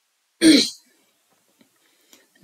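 A man clears his throat once, a short sharp burst just under half a second long, starting about half a second in.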